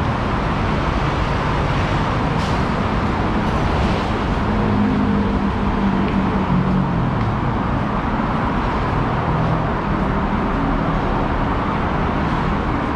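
Steady roar of traffic on a busy multi-lane highway just below. A heavy vehicle's engine hum rises above it for a few seconds midway.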